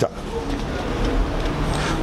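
A steady rushing noise with a low rumble underneath, at about the level of the nearby speech.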